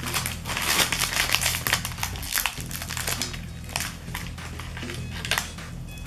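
A foil-lined plastic biscuit wrapper crinkling and crackling as it is opened by hand: a rapid, irregular run of sharp crackles and rustles.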